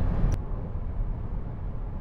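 Road and wind noise inside the cabin of a Jaguar I-Pace electric SUV at autobahn speed, a steady rush heaviest in the low range with no engine note. A brief click about a third of a second in, after which the rush is quieter.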